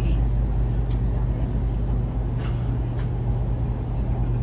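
Steady low rumble of a THSR 700T high-speed train heard from inside a passenger car as it runs toward a station stop, with a few faint light clicks.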